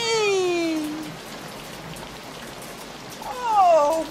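A cat meowing twice: a long meow falling in pitch at the start, and a louder, sharply falling meow near the end.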